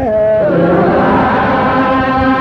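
Menzuma devotional chanting: a lead voice ends its wavering phrase on a held note, and about half a second in a group of voices takes up one long, steady note.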